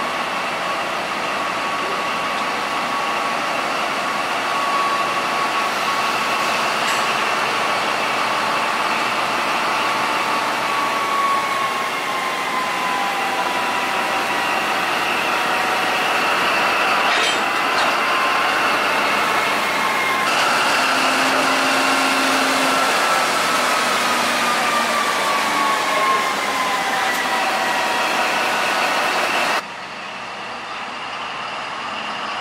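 Diesel locomotive running close by, a steady engine noise with high whining tones that drift slowly down in pitch. A single sharp click sounds about halfway through.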